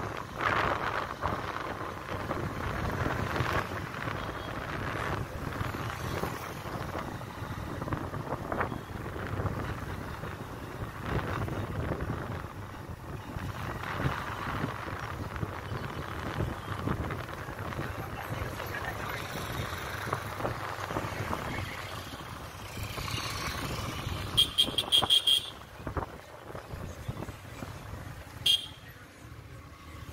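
Motorcycle riding along, its engine and road and wind noise steady. Near the end a horn sounds a rapid string of short beeps, then one more short beep a few seconds later.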